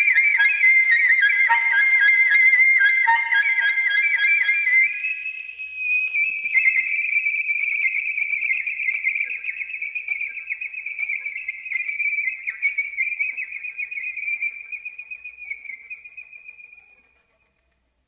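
Solo soprano saxophone playing fast, dense overlapping patterns high in its range. About five seconds in it narrows to a single high, wavering line, which fades away and ends the piece a second before the end.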